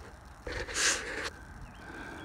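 A single breath close to the microphone, a short hissing exhale or sniff lasting under a second, about half a second in.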